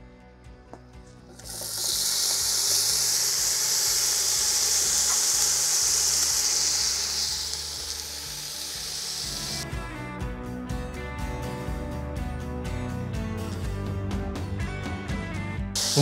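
Diced raw bacon hitting a hot pot and sizzling. The sizzle starts about a second in, stays loud for about six seconds, then settles quieter. Background music plays underneath.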